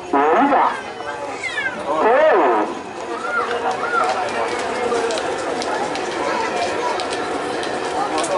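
Men shouting and calling out, with a long falling yell about two seconds in, followed by the steady murmur of a large outdoor crowd.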